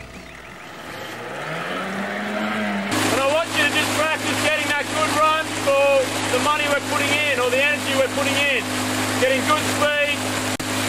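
A motorboat engine runs steadily alongside a rowing eight, with a voice calling out in short, repeated shouts over it from about three seconds in. Before that, a low tone rises in pitch and cuts off suddenly.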